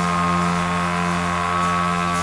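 Post-punk band's electric guitar and keyboard holding one sustained chord, steady and without drums, a strong low note under higher overtones.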